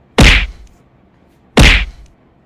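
Two loud slap-like whacks about a second and a half apart, each fading out quickly.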